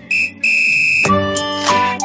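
Two steady, high whistle blasts, a short one and then a longer one of about half a second. Dance music with a beat starts just after, about a second in.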